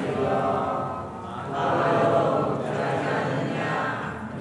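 A group of people chanting a Buddhist recitation together in a steady drone of voices, with a short drop in loudness about a second in. It accompanies the water-pouring libation that shares merit at the end of a merit-making ceremony.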